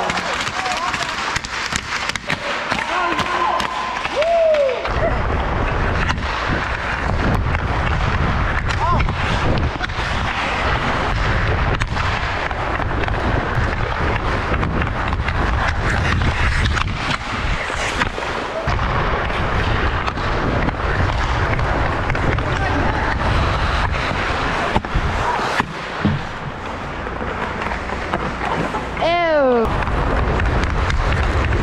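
Hockey skates carving and scraping on ice, with frequent sharp knocks of a stick blade on the puck, picked up by a helmet camera. From about five seconds in, wind rushing over the microphone adds a heavy rumble as the skater moves.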